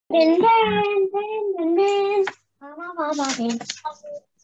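A child's voice singing in long held notes, in two phrases with a short break a little past halfway.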